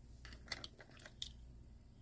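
Faint room tone with a few soft, irregular clicks, about half a second and again a second and a quarter in.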